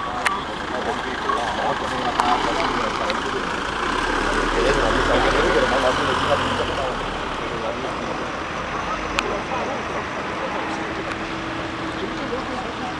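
Ambulance van driving slowly past at close range: its engine rumble swells as it goes by, about four to six seconds in, then eases as it moves off.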